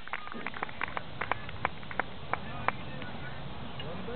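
Scattered hand claps, sharp and irregular, about four or five a second, over a steady outdoor background.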